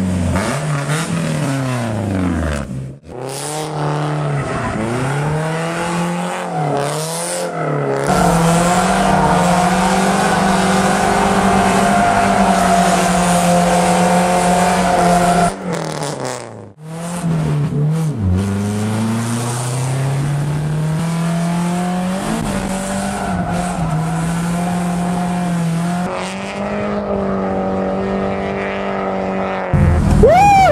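Drift car's engine revving hard, its pitch swinging up and down as the throttle is worked through the slides, with a long tyre squeal through the middle. The sound breaks off abruptly a few times.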